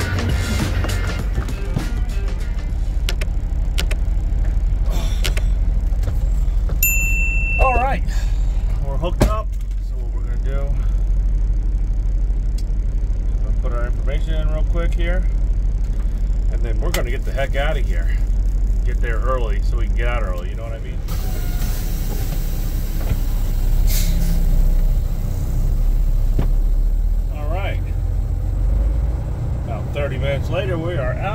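Semi-truck diesel engine running with a steady low drone, heard from inside the cab, with a short high beep about seven seconds in.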